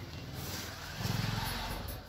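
A motor vehicle's engine running, its low buzz louder for about a second from the middle on, over a steady hiss.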